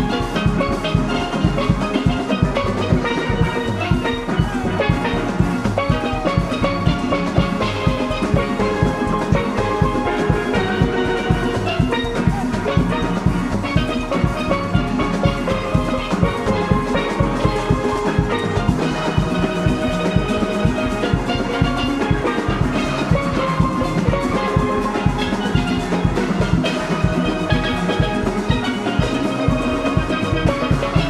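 Steel orchestra playing: many steelpans ringing out melody and chords over a drum kit keeping a steady, driving beat.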